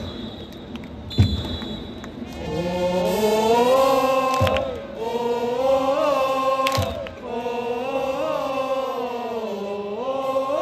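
A cheer section of BayStars fans singing a cheer song in unison, coming in about two and a half seconds in after two loud thumps in the first second or so.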